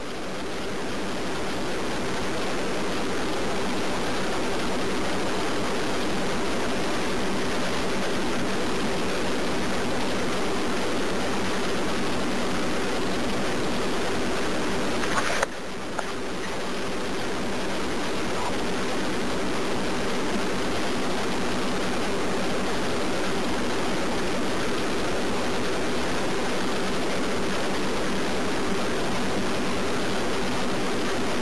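Steady hiss of telephone-line noise with a low steady hum on a 911 call recording while no one on the call speaks, broken by a brief click and dip in level about fifteen seconds in.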